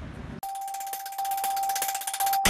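The news channel's outro jingle begins about half a second in, sharply replacing street noise: a steady held electronic tone with a quick run of bright, bell-like ticks above it.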